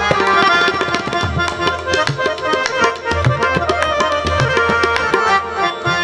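Harmonium and tabla playing an instrumental passage of classical kirtan: sustained reed chords over quick tabla strokes, with deep bayan strokes about once a second.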